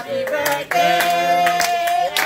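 Singing with hand clapping in time; the voice holds one long note through the second half.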